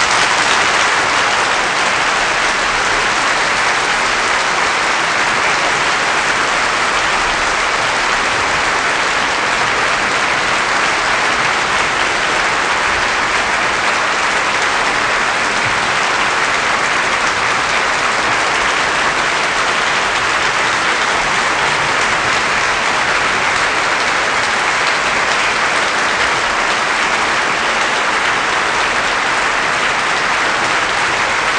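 Opera audience applauding steadily at the close of the final scene of a live performance: a dense, even clapping with no music.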